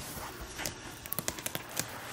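A quick run of light taps and knocks, handling noise from the fabric toy chest and its dividers being fitted together.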